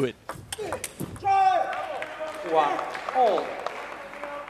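A table tennis ball clicks sharply off bats and table several times in quick succession. About a second in, shouts and applause from the crowd follow as the point ends.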